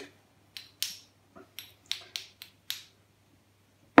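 Small pieces of scrap metal clicking and tapping against each other as they are handled: about eight short clicks in the first three seconds, then a louder knock at the very end.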